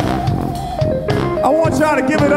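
Live band music led by a keyboard solo on an organ-style (B3) keyboard sound: one held note, then a quick run of melody notes, over bass and a drum kit.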